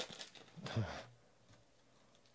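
Foil card-pack wrapper handled in the hands, a brief faint rustle about half a second in, then near quiet.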